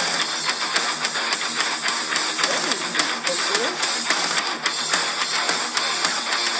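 Japanese visual kei rock song playing, with electric guitars and a steady beat.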